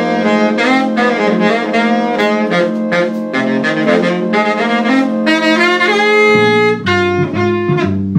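Big band horn section playing ensemble jazz, with trumpets and trombone sounding sustained chords and moving lines together. The lowest notes drop out a little after six seconds in.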